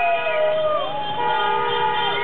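Many horns sounding at once in a celebrating street crowd: long overlapping held tones, some sliding up and then down in pitch over about a second.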